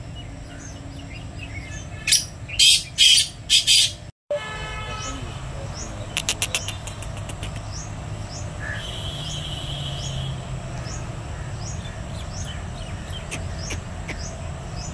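Black francolin calling: four loud, harsh notes in quick succession about two seconds in. A faint high chirp repeats steadily about twice a second throughout, and a short run of rapid clicks comes near the middle.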